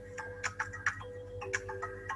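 Ticking, clock-like game background music from the Quizizz quiz dashboard playing through the computer, a run of light ticks over a few held notes.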